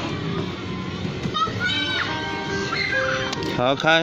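Short electronic tune from a ride-on toy car's built-in sound player, a few held notes at changing pitches, with a young child's voice over it.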